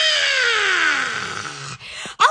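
A woman's long high-pitched wail with no words, sliding steadily down in pitch for about a second and a half and fading out near the end.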